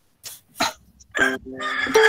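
Two quick coughs a third of a second apart, then a person saying a drawn-out "uh".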